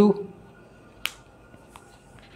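A single sharp plastic click about a second in, with a fainter tick shortly after: a whiteboard marker's cap being worked by hand.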